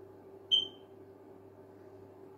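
A single short, high-pitched electronic beep about half a second in, fading quickly, over a faint steady hum.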